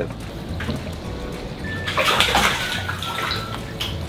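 Water sloshing and splashing inside a plastic water trough as a bass is netted out of it, loudest about two seconds in. Background music plays underneath.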